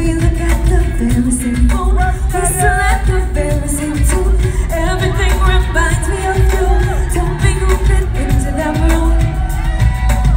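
Live pop/R&B concert music heard from the audience: a loud, bass-heavy beat with women's sung vocal lines over it.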